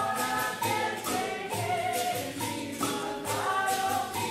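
Several voices singing together in a chorus over a steady percussion beat of about two strikes a second.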